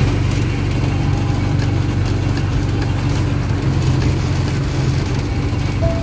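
Motor-driven sugarcane juice crusher running with a loud, steady low hum, its big flywheel spinning as cane stalks are fed into the rollers.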